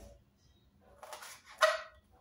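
Kitchen knife slicing ivy gourds on a plastic cutting board: a few short cuts, with a louder, sharper sound about a second and a half in.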